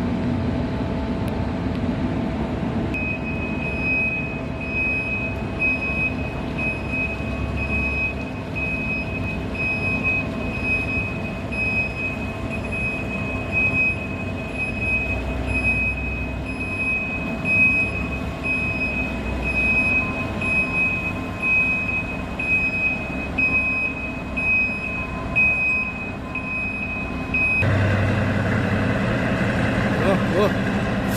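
Reversing alarm of a loaded mining haul truck beeping steadily as the truck backs up, over the low running of its diesel engine and the plant's machinery. Near the end the beeping stops and a louder rush of engine noise sets in.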